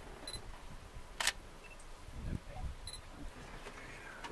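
Two short, high electronic beeps about two and a half seconds apart, with a sharp click about a second in, over quiet outdoor background noise.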